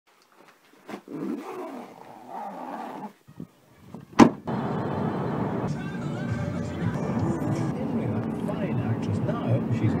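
Rustling and handling of a bag for the first few seconds, a sharp knock at about four seconds in, then steady road noise inside a moving car with voices or music over it.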